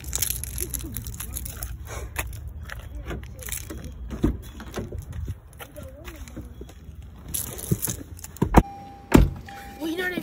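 Phone-mic handling noise and clicks while a car door is opened and someone climbs into the seat. Near the end there are two sharp knocks, the second one loud, as the door is shut. Then a car's electronic warning chime sounds in short repeated tones.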